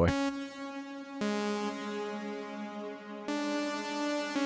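Sawtooth synth chords from the u-he Zebra HZ soft synth played through its NuRev plate reverb, with the reverb's decay turned up for a long tail. Three sustained chords sound one after another, changing a little over a second in and again about three seconds in.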